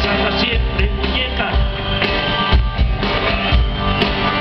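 A live rock band playing a song: electric and acoustic guitars over a drum kit, with a man singing lead into the microphone.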